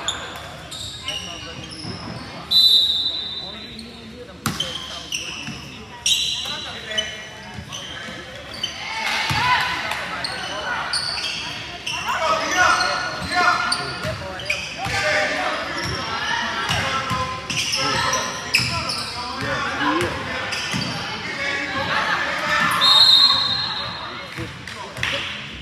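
Basketball game in a gym: the ball bouncing on the hardwood, short high sneaker squeaks, and players and spectators calling out, the voices getting busier about nine seconds in. A loud high whistle sounds near the end as a player goes down and the referee raises an arm.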